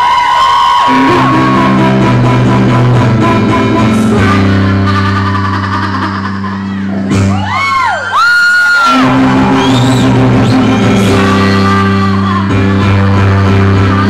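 A woman singing live over sustained keyboard chords, her held notes and sliding vocal phrases over a steady low accompaniment. About seven seconds in, the chords drop out briefly under a swooping vocal line, then come back.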